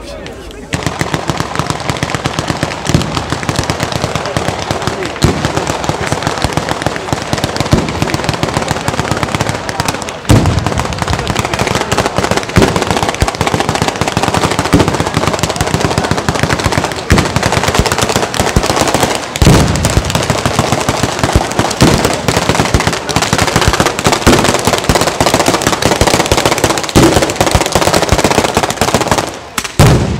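A ground-laid chain of firecrackers (a San Severo-style batteria) going off in a fast, unbroken crackle of bangs like machine-gun fire. It starts under a second in and stops just before the end, with heavier booms standing out about ten and about twenty seconds in.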